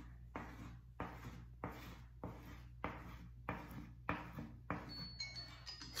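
Crayon scraping on paper as circles are drawn quickly, one stroke about every 0.6 seconds. Near the end a timer alarm starts chiming, marking the end of the minute.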